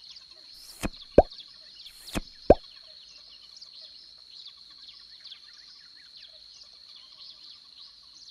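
Two cartoon plop sound effects, about a second apart. Each is a short hiss followed by a quick upward-sweeping pop. Under them runs a steady background of chirping birds.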